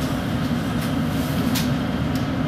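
Steady low rumble and hum of a London Underground train, heard from inside the carriage, with a few faint clicks.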